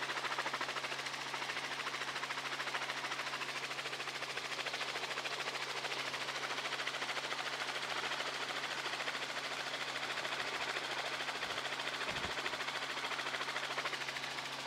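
Helicopter rotor and engine noise heard from aboard the helicopter: a steady, fast, even chop over a low hum.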